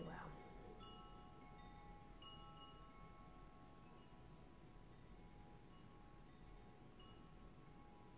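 Faint chime tones over near silence: several soft ringing notes, held and overlapping, each starting and fading at different times.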